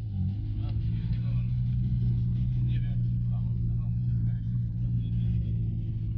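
Fiat Seicento rally car's engine heard from inside the cabin, pulling under load at steady revs after a brief lift just before.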